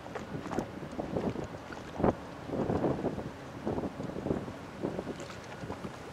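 Wind buffeting the microphone in uneven gusts, strongest about two seconds in.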